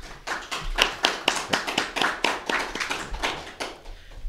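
A small audience applauding, with the separate hand claps easy to pick out. It is applause at the end of a poem recital.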